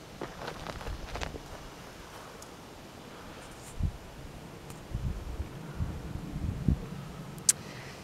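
Quiet outdoor background with faint footsteps on gravel and light rustling from handling the camera. A few soft low thumps come in the second half, and there is a single click near the end.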